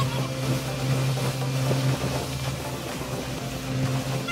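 Small motorboat's engine running at a steady pitch while under way, over a steady hiss of water and wind.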